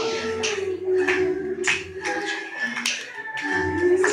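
Live-looped vocal music: layered sustained sung tones over a low line, with a steady beat of sharp hand claps a little under twice a second, the whole loop repeating every few seconds.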